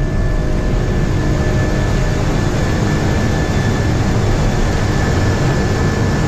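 Twin-engine airliner at takeoff power, heard from the flight deck as it rotates and lifts off: a loud, steady engine and airflow noise with a thin high whine running through it.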